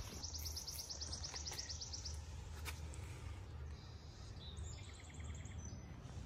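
Wild birdsong: a rapid, high trill that stops about two seconds in, then a shorter, higher trill near the end, over a steady low outdoor rumble.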